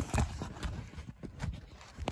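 Stapled cardboard box being handled and pried at, giving a string of irregular knocks, taps and scrapes.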